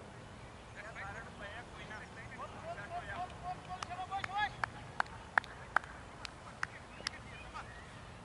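Voices of cricket players calling out across the field, one call rising in pitch near the middle. This is followed by a run of about eight sharp clicks, roughly two a second.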